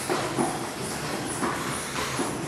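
Feet stepping up onto and down off a plastic aerobic step, soft thuds about two a second, over a steady background noise.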